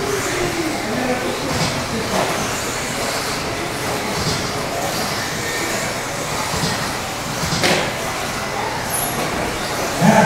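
Electric RC off-road buggies of the 13.5-turn brushless class running on an indoor dirt track: a steady mix of motor and tyre noise with background chatter in a large hall, and a single knock about three-quarters of the way in.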